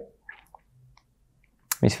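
A short pause in a man's speech, nearly silent except for a few faint soft mouth clicks; his speech resumes near the end.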